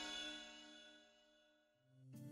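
A logo chime of many bright ringing tones fading away. A low note comes in near the end as the intro music begins.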